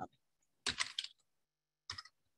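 Typing on a computer keyboard: a quick run of keystrokes about two-thirds of a second in, and one more keystroke near the end.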